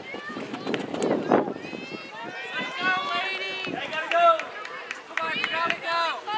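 Several spectators shouting and cheering for runners, high-pitched voices overlapping so that the words don't come through.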